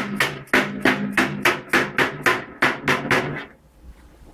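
A mallet hammering galvanized sheet steel, shaping a roofing corner piece. It gives a steady run of sharp strikes, about three a second, that stops about three and a half seconds in.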